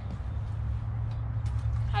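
A steady low rumble, with no distinct event standing out above it.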